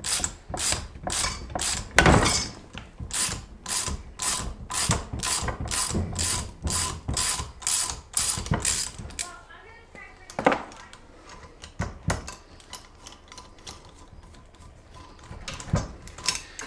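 Ratchet clicking in a steady run, about four clicks a second, as a valve spring compressor is backed off a cylinder head to release the tension on a freshly seated valve spring. After about nine seconds the clicking stops, leaving a few scattered clicks and knocks.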